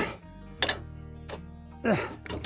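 Background music with two light metallic clinks, about half a second and a second and a quarter in, from the handling of a ductile-iron bench vise with a sliding steel T-bar handle.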